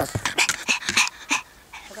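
A chihuahua panting in quick, short breaths, about three a second.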